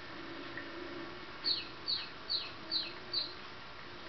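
A chick peeping: five quick, high chirps, evenly spaced, each sliding down in pitch, starting about halfway through.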